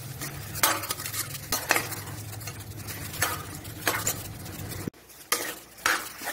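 A spoon stirring chopped vegetables in a pressure cooker pot, scraping and clinking irregularly against the pot's sides, with a sizzle of cooking underneath. A steady low hum runs beneath and cuts off suddenly near the end.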